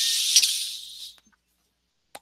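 A hiss lasting about a second, with a single click about half a second in.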